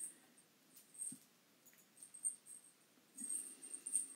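Faint, scattered clicks and rustles of knitting needles and yarn as a sock is knitted by hand.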